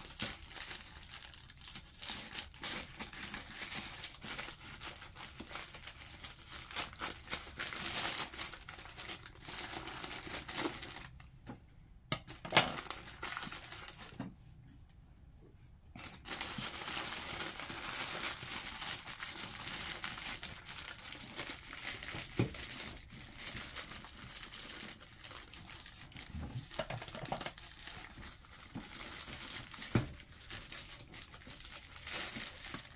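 Plastic mailing envelope and its inner plastic wrapping crinkling and rustling as they are handled, torn and cut open with scissors, with many small snips and clicks. There are two brief quiet pauses around the middle and one sharp click just before the first of them ends.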